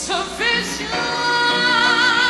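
Gospel choir singing. A new phrase comes in sharply at the start, sliding into held notes with a wavering vibrato.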